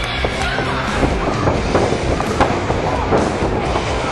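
Background music laid under the footage, running steadily.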